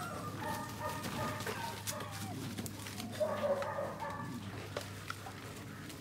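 Puppies whining and yelping as they play, in two bouts of short high-pitched calls with a few light knocks between them.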